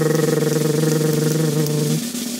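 Steady, buzzing engine-like sound effect held at one pitch, starting abruptly and dropping away after about two seconds.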